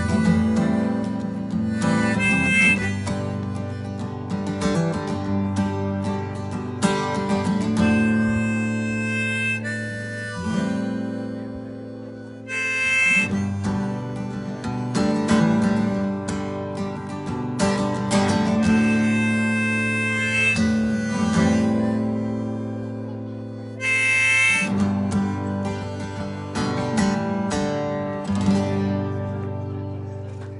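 Harmonica played from a neck rack into a microphone over a strummed acoustic guitar: an instrumental harmonica solo with long held notes, dying away near the end as the song closes.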